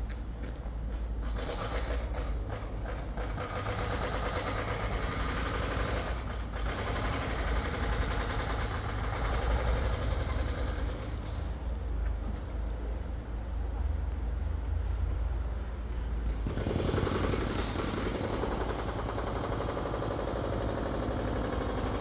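Electric Berner Oberland Bahn train at the station: a steady low rumble with a dense, rapid clatter over it, easing off somewhat in the middle and picking up again.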